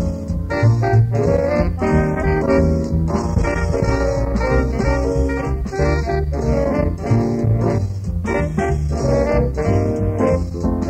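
Small jazz band playing a swinging number live, heard on an old reel-to-reel tape recording from 1960.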